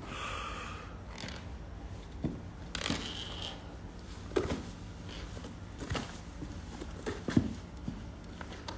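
Quiet room with a steady low hum, broken by a few faint knocks and rustles as a handheld phone is moved about.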